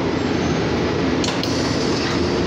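City bus engine and road noise heard from inside the bus by the rear doors, running steadily.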